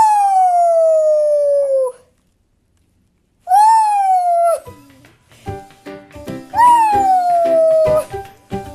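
A dog howling: three long howls, each sliding down in pitch, the middle one shorter. Background music with a steady beat comes in about five seconds in, under the last howl.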